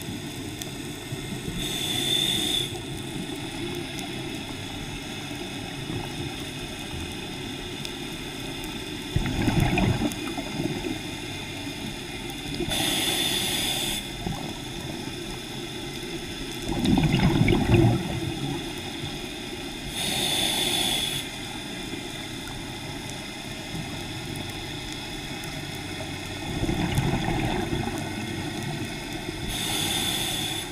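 Scuba diver breathing through a regulator, heard underwater: a hissing inhalation of about a second with a faint whistle in it, followed some seconds later by a rumbling burst of exhaled bubbles, about four breaths in all.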